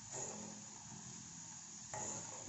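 Faint, steady sizzling of a green herb paste simmering in coconut oil in an iron kadai.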